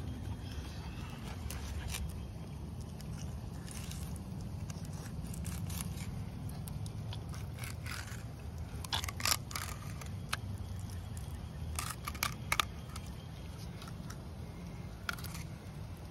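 Fillet knife slicing down the side of a red drum, with a few scattered short scrapes and crackles from the blade, over a steady low rumble.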